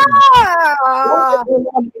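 A man's long, drawn-out excited yell that rises and then falls in pitch, lasting about a second and a half, followed by a few brief spoken sounds.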